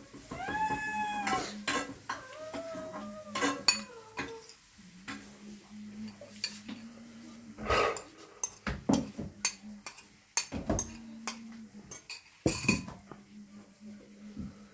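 A white ceramic bowl and a stainless steel plate clinking and scraping as curry is tipped out of the bowl onto the rice, with many sharp clicks and knocks in the second half. A few high, drawn-out, wavering cries sound over the first four seconds.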